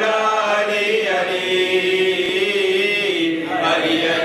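A man chanting a devotional Urdu poem unaccompanied, in long held notes that bend in pitch.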